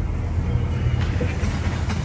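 A steady low hum or rumble.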